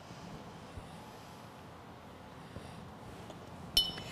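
Quiet room tone with faint handling sounds as small fabric pieces are laid flat on a wool pressing mat, and a short, bright clink near the end.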